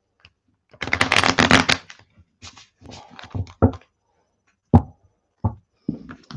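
Two tarot decks shuffled together: a rapid riffle of cards lasting about a second, then several short knocks and taps as the stacks of cards are handled.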